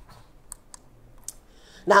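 A few sharp, faint clicks on a presentation computer as the next slide is brought up.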